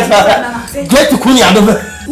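Speech: a person talking loudly, with a short pause just before the middle.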